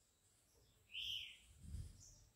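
A single faint bird chirp about a second in, one short note rising then falling, over near silence. A faint low bump follows near the end.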